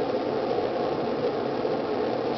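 A steady hiss of background noise, even and unchanging, in a pause between speech.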